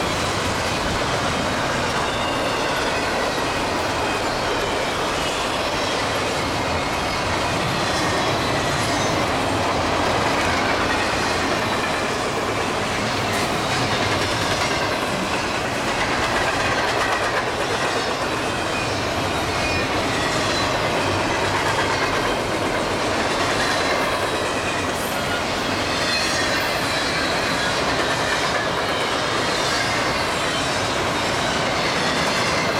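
Double-stack intermodal freight cars rolling past at speed: a steady noise of steel wheels on rail, with clicks from the wheels and light, high wheel squeal coming and going.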